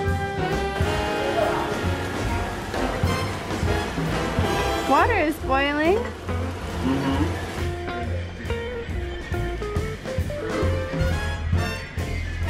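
Background jazz music with brass instruments over a steady beat, with a run of sliding notes about five seconds in.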